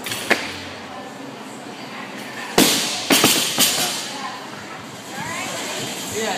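Barbell loaded to 135 lb with rubber bumper plates dropped onto the gym floor: one heavy crash about two and a half seconds in, then a few quick bounces over the next second. A sharp clank just before, near the start.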